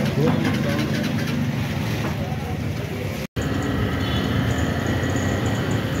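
Busy street-market ambience: a steady din of background voices and traffic rumble, broken by a short gap a little over halfway through.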